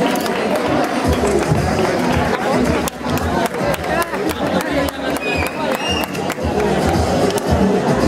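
Music playing with voices and crowd chatter over it, and a scatter of sharp clicks in the middle.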